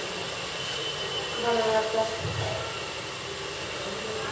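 A person's voice, brief and indistinct, about one and a half to two seconds in, over steady background hiss.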